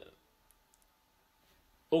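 Three faint, short clicks about half a second in, over quiet room tone: computer mouse clicks during a screen-recorded session. A man's voice starts again just at the end.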